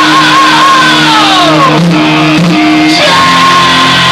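Heavy metal band playing live, with a high screamed note that slides steeply down in pitch about a second in, then a new high note held steady near the end, over loud guitars, bass and drums.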